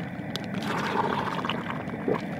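Hot water sloshing and splashing in a large pot as a chicken in a shrink-wrap freezer bag is dipped in to shrink the bag tight. A short click comes just before the splashing, which is loudest from about half a second to a second and a half in.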